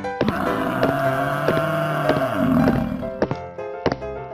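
A long, low animal call lasting about three seconds, heard over background music with repeating plucked notes.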